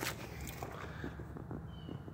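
Faint footsteps and shuffling on gravel against a quiet outdoor background, with a short, faint high chirp near the end.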